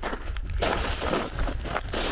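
A shoe scraping and crunching through loose gravel lying on a tarmac road: a rough grinding scrape of about a second and a half, after a few small clicks of stones.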